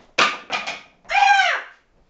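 A person's voice shouting: a few short, sharp syllables, then one drawn-out high call that rises and then falls in pitch.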